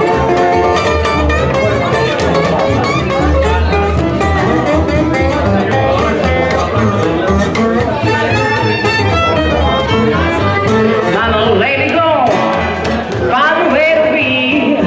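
A live gypsy jazz band: plucked double bass under an acoustic guitar strumming a steady, driving rhythm.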